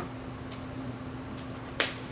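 Thin Bible pages being turned at the pulpit: a faint brief rustle about half a second in and a single sharp snap of a page near the end, over a steady low hum.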